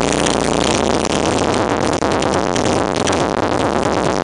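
Electronic music played loud and steady through a car audio system of six 15-inch SPL Dynamics subwoofers driven by four 3500-watt amplifiers, heard from inside the van's cargo area.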